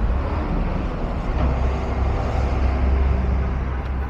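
Street traffic noise: a steady low vehicle rumble that swells in the middle and eases off near the end.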